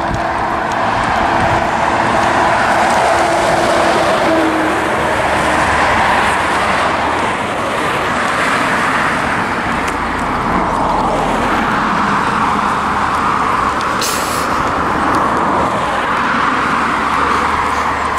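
Road traffic on a main road: cars driving past with tyre and engine noise that swells and fades as each one approaches and goes by. There is a brief high hiss late on.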